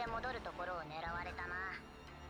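Speech only: a character's line of dialogue from the anime episode, with a low steady hum beneath it from about halfway through.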